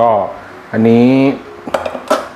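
A stainless-steel bowl being moved on the countertop, giving a brief light clatter of metal near the end.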